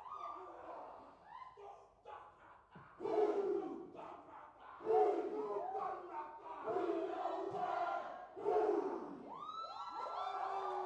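A group of men performing a haka: loud chanted shouts in unison, delivered in strong phrases that come roughly every two seconds after a quieter start, with a rising high call near the end.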